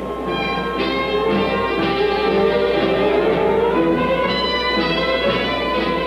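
Orchestral film score with strings playing sustained, slowly changing chords, with a gently rising line in the middle.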